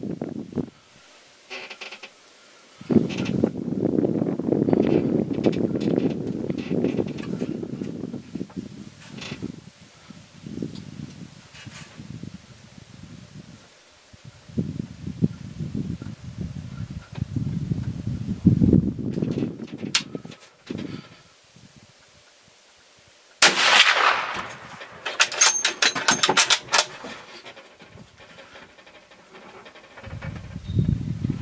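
A single rifle shot from a .300 Ultra Mag, sudden and sharp with a short ringing tail, about three-quarters of the way through, followed within a couple of seconds by a quick run of sharp clicks and rattles. Before the shot, low muffled rumbling comes and goes on the microphone.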